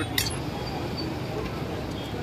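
Steady background hubbub of a crowd with faint voices. One sharp metallic clink comes shortly after the start: a serving ladle striking a large steel curry pot.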